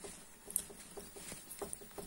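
Uncapping fork's metal tines scraping wax cappings off a honeycomb frame: short, crackly scratches in an uneven run, several each second.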